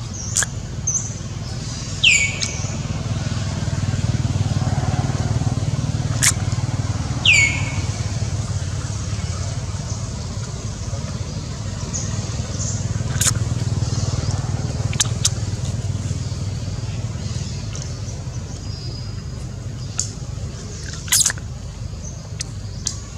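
Outdoor ambience: a steady low rumble of distant road traffic that swells and fades, with two sharp downward-sweeping bird calls early on and scattered light clicks.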